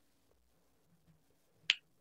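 Near silence broken by one short, sharp click near the end.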